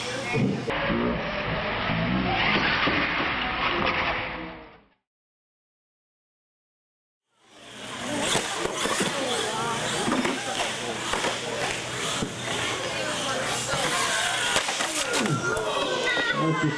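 Crowd chatter in a large hall that fades out a little before five seconds in, leaving a couple of seconds of dead silence. Then the crowd noise returns, mixed with a radio-controlled monster truck driving on a concrete floor.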